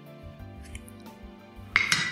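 Soft background music, then near the end a single sharp clink with a brief ring as the wooden spoon knocks against the stainless steel mixing bowl.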